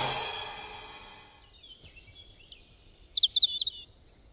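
Background music dies away, then birds chirp and twitter in short high calls, with a quick run of chirps near the end.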